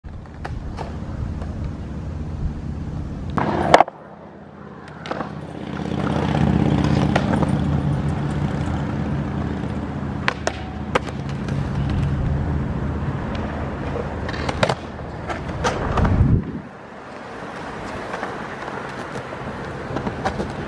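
Skateboard wheels rolling over concrete with sharp clacks of the board. The rolling builds and cuts off suddenly twice: after a loud clack about four seconds in, and again near sixteen seconds.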